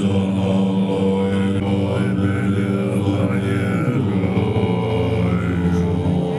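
Tibetan Buddhist monks chanting together in very deep voices, a low droning chant with long held notes that shift slowly in pitch, carried through a microphone.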